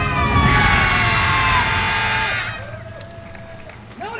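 Yosakoi dance music and the dancers' massed voices ending together on a held final sound, which cuts off sharply just past halfway. Afterwards only quieter crowd noise with a few scattered calls remains.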